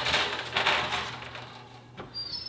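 Foil-lined metal baking sheet being slid onto a wire oven rack: a sudden scrape at the start, then a rough scraping rattle that fades away over about a second and a half, over a low steady hum.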